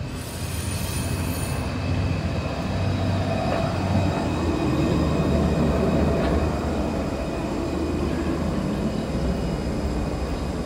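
Alstom Citadis 302 articulated tram running past on curved track: a steady rumble of wheels and motors that grows louder toward the middle and then eases off a little.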